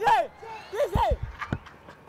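Man's voice giving Hindi cricket commentary in short bursts, with a few dull low thuds about a second in.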